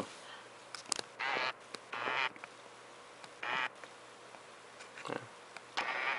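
Small camcorder zoom motor whirring in three short buzzy bursts as the lens zooms in, with a faint click before the first.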